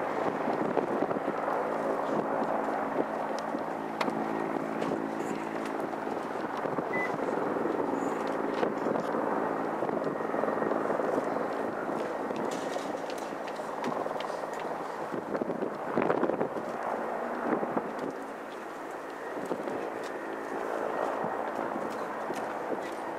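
Mitsubishi Regional Jet's twin Pratt & Whitney PW1200G geared turbofans running steadily at taxi power while the jet rolls slowly along the ground: a continuous engine noise with a low hum of steady tones.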